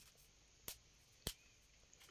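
Dry lasagna sheets snapping as they are broken by hand: two short, sharp cracks a little over half a second apart, with near silence around them.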